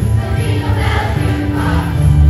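A children's choir singing a song together over an instrumental accompaniment with a strong bass.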